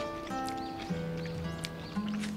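Acoustic guitar playing a slow melody, single plucked notes ringing one after another.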